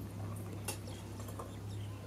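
Goat being milked by hand into a plastic bottle: faint irregular squirts and ticks of milk hitting the bottle, with one sharper click just under a second in, over a steady low hum.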